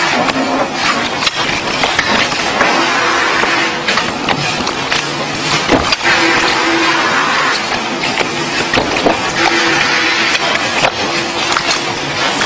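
Steady factory workshop noise with frequent rapid clicks and clatter, from playing cards being handled and stacked at speed.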